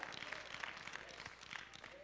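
Light, scattered hand-clapping from a few members of a congregation, dying away.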